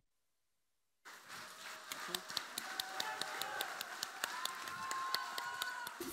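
Faint, scattered audience clapping with crowd murmur in a concert hall, fading in about a second in after a moment of dead silence at an edit cut.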